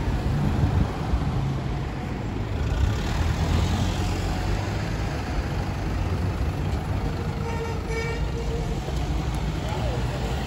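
City street traffic: vehicle engines idling and passing, making a steady low rumble with road noise.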